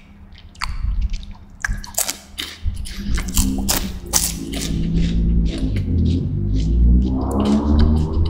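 Crisp Apollo chocolate wafer stick being bitten and chewed right at the microphone, with sharp crunches through the first three seconds. From about three seconds in, a low closed-mouth hum with shifting pitch runs over the chewing.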